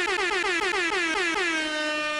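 Air horn sound effect: one long blast with a fast stutter of pitch dips, about six a second, that settles back into a steady tone near the end.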